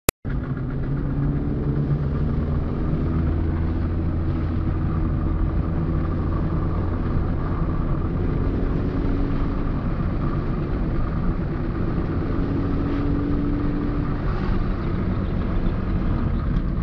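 Engine and road noise heard inside a moving car's cabin: a steady low drone whose pitch shifts slightly as the car drives.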